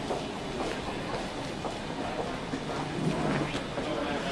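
Steady background noise of a busy terminal hall, with faint murmuring voices in it.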